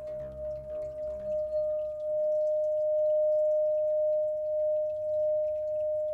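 Clear quartz crystal singing bowl, held in the hand and sung by circling a wand around its rim. It gives one pure, steady tone that swells over the first couple of seconds, then holds with a slow waver in loudness.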